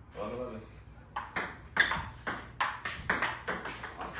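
Table tennis rally: the celluloid ball clicking back and forth between paddles and the tabletop of a HEAD table, about three sharp ticks a second, starting about a second in.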